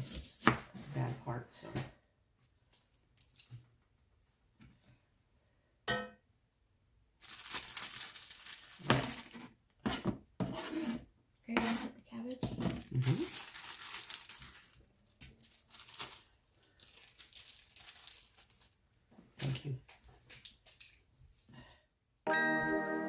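Kitchen knife chopping an onion on a cutting board for the first couple of seconds. After a quiet pause, a clear plastic food bag crinkles and is torn open, with long stretches of rustling and a few clinks of utensils.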